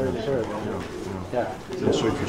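Indistinct conversation among a few people, the words too faint or low to make out, over a steady low hum.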